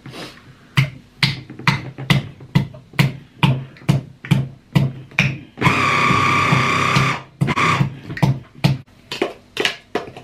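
Electric hand blender with a chopper bowl, pulsed in short bursts about twice a second, then run continuously for about two seconds with a steady whine, then pulsed again: chopping boiled jengkol beans.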